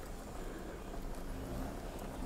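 Quiet, steady low background rumble with no distinct event.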